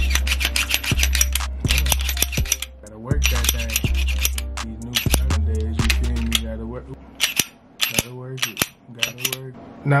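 Background music with a deep bass line and a fast run of crisp hi-hat-like ticks. About seven seconds in the bass drops out, leaving only scattered sharp clicks.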